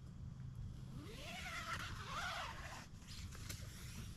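Nylon tent fabric and gear rustling as someone reaches into a backpacking tent: a rustle of about two seconds, starting about a second in, with a rising and falling note through it.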